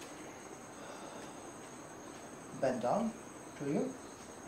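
Steady high-pitched chirring of insects. A man's voice comes in briefly twice in the second half, louder than the insects.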